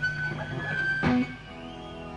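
Electric guitar through an amplifier: a held high note that steps in pitch, then a sharp picked attack about a second in and a lower note ringing on.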